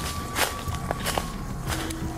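Footsteps on a leaf-covered forest trail, about two steps a second, the dry fallen leaves rustling underfoot.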